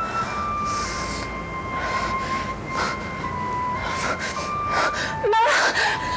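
Slow background music of long held notes, over a woman's heavy breathing and gasps as she comes round from general anaesthesia, with a wavering moan near the end.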